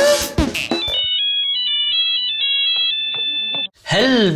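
A short, high electronic ringtone-style melody of quick stepping notes, which stops abruptly just before the end. A drum-backed music cue is ending in the first second.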